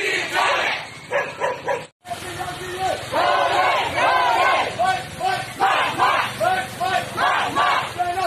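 Crowd of marching protesters chanting slogans together in a steady, repeating rhythm, with a sudden cut about two seconds in where one recording gives way to another.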